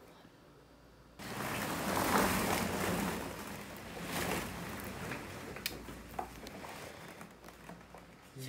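Plastic ball-pit balls rustling and clattering as someone shifts through them. It starts suddenly about a second in, is loudest soon after, then thins to scattered clicks.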